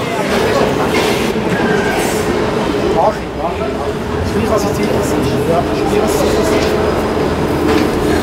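Underground airport shuttle train running: a steady low rumble with a humming tone, with people talking over it.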